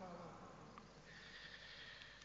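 Near silence: the faint room tone of a large church, with a thin, faint high tone starting about a second in.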